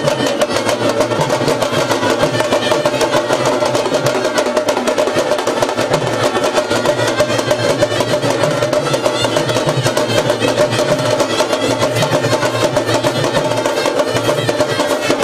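Street procession band playing: fast, steady drumming with a brass horn carrying the tune, without a pause.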